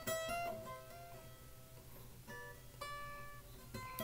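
Acoustic guitar playing a hammer-on and pull-off exercise: short runs of clear single notes stepping up and down between neighbouring pitches, easing off about a second in and starting again past the halfway mark.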